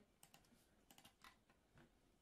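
Faint clicks of a computer keyboard and mouse, about half a dozen soft taps spread over two seconds.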